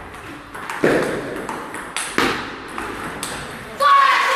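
Table tennis rally: the celluloid ball clicks sharply off the paddles and table in quick succession. Near the end a loud voice calls out over the play.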